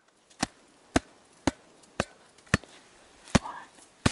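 A gloved hand striking the flat blade of a metal avalanche shovel laid on top of an isolated snow column: six sharp taps, mostly about half a second apart with a slightly longer gap before the last. These are the loading taps of an Extended Column Test, checking whether a fracture in the snowpack will propagate.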